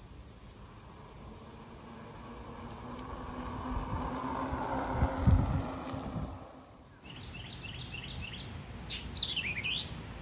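Rad Power electric fat-tire bike passing on a concrete path: a hum and tyre noise build, peak about five seconds in, then fade. After a sudden change, birds chirp in two quick runs of short falling notes.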